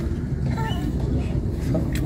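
Brief snatches of people talking nearby over a steady low rumble.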